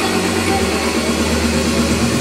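Loud amplified live band music, its steady bass line stepping down to a lower note about half a second in, with no clear singing.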